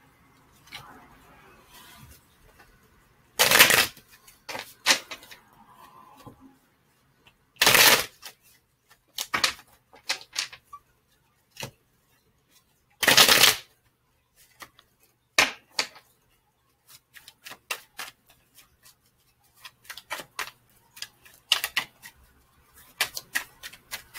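A deck of tarot cards being shuffled and handled: three louder shuffles of about half a second each, roughly 4, 8 and 13 seconds in, with many light card clicks and taps between them as cards are drawn for a clarifier.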